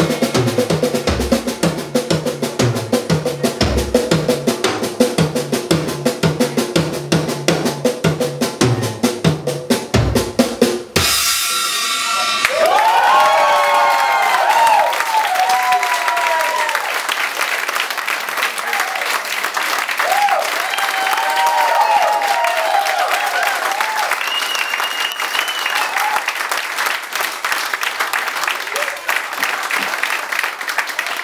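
Live drum kit solo: bass drum, snare and cymbals in a fast, dense pattern that stops sharply a little over ten seconds in. An audience then cheers, whoops and applauds for the rest of the time.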